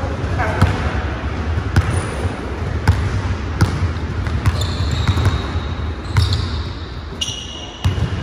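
Basketball being dribbled on a hardwood gym floor, bouncing about once a second. Short, high sneaker squeaks on the court come around the middle and again near the end.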